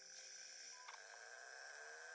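Faint camcorder self-noise: a steady hiss with a thin high whine, and from about a second in a faint whine rising slowly in pitch as the lens zooms in.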